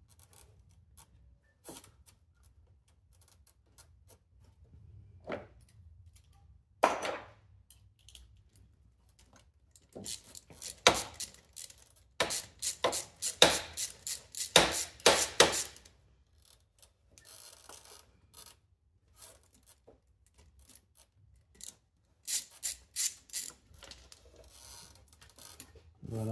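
Hand tools on a scooter engine's cylinder head: scattered metal clicks and knocks, with runs of rapid ratchet-wrench clicking in the middle and again near the end, as the cam chain tensioner is unbolted.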